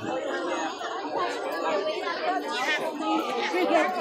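Several people talking at once: indistinct, overlapping chatter of voices with no single clear speaker.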